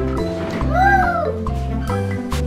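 Children's background music with a steady beat, and a short comic sound effect near the middle: one call that rises and then falls in pitch.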